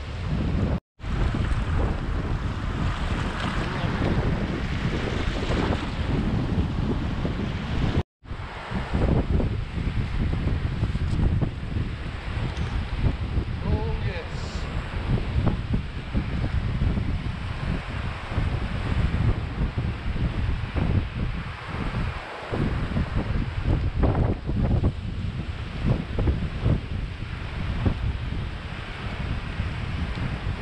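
Wind buffeting the microphone over surf breaking on the beach, gusting up and down. The sound cuts out briefly twice, near the start and about eight seconds in.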